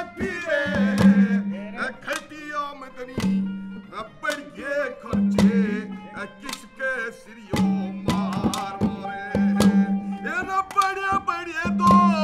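A ragini folk song: a voice singing over instrumental accompaniment, with a steady rhythm of hand-drum strokes.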